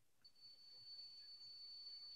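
Near silence: faint background hiss with a thin, steady high-pitched tone coming in just after the start.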